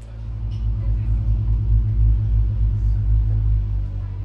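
Electronic synthesizer drone played through the club PA: a deep, loud bass rumble with a fast pulsing flutter, over steady higher held tones.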